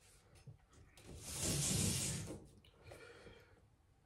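A man breathing out, one long breath of about a second and a half, followed by a fainter breath.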